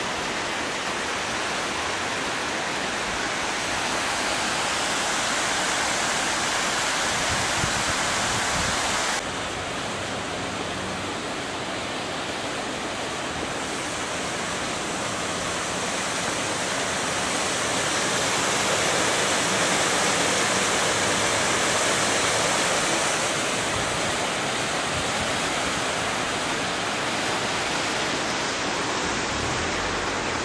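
Water rushing over a small weir beneath a stone bridge: a steady, even rush, changing abruptly in tone about nine seconds in.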